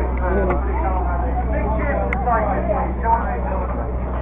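Crowd chatter: many people talking at once, over a steady low rumble.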